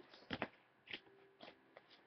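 Faint handling of paper greeting cards: a few short rustles and taps as one card is put down and the next is picked up.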